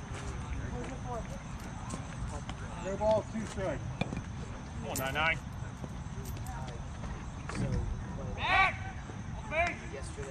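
Short shouted calls from young players and spectators around a youth baseball diamond, several separate high-pitched shouts with pauses between them, over a steady low outdoor rumble.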